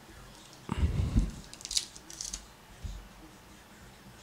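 Hands handling a foil-wrapped trading-card pack on a wooden tabletop: a few soft thumps about a second in as the pack is taken from the stack and set down, then two brief crinkles of the wrapper.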